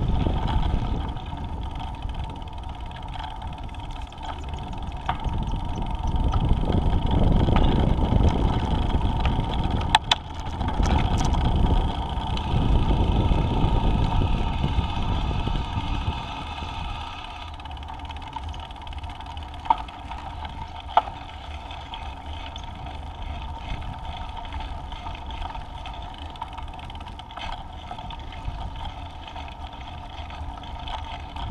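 Riding noise from a Space Scooter on pavement: wind rumbling on the action-camera microphone over the rolling wheels, louder in the first half and easing after about 16 seconds. A few sharp clicks stand out, one about ten seconds in and two more around twenty seconds in.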